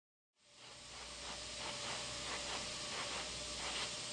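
A steady hiss that fades in within the first second and then holds, with a faint thin steady tone under it.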